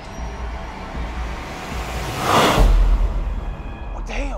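Tense background score: a low music drone, with a whoosh swelling about two seconds in that ends in a deep low boom.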